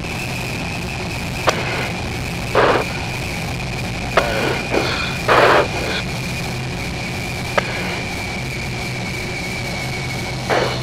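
Steady radio and intercom channel noise: an even hiss with a low hum and a constant high whine, broken by three sharp clicks and two short bursts of static, the second of them about halfway through.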